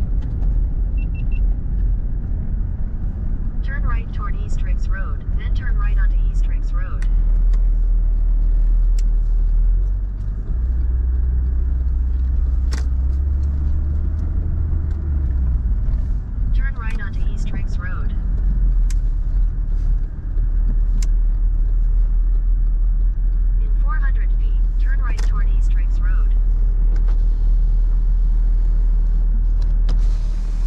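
A car's engine running with a steady low rumble, heard from inside the cabin. It swells for about five seconds in the middle. Three short stretches of indistinct voices come and go over it.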